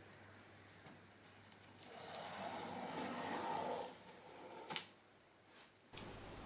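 Cardboard tear strip being pulled along the top of a cardboard box: a steady tearing rasp lasting a few seconds that grows louder, ending in a short click as the strip comes free.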